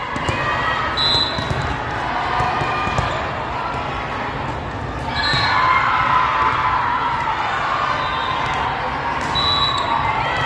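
Indoor volleyball rally in a large gym: the ball struck on the serve and passes, a few short high sneaker squeaks on the court, and players and spectators calling out over a steady crowd chatter that grows louder about halfway through.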